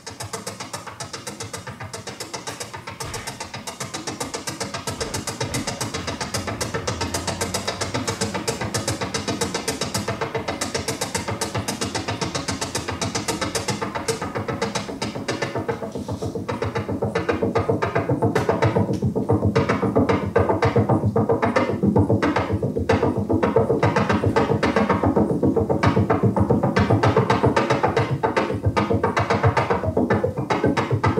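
Electronic music from a Behringer Model D analog synthesizer, a fast, evenly repeating pattern of clicky, percussive pulses that starts suddenly and runs on without a break. About halfway through it grows louder and fuller in the lower range.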